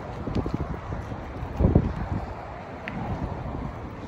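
Wind buffeting the microphone, a low rumble with one stronger gust about halfway through.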